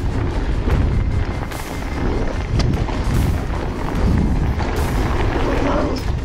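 Wind rumbling on the camera microphone as a Santa Cruz Hightower trail bike rolls fast down a dirt trail, with tyre noise and rattles and knocks from the bike over the bumps.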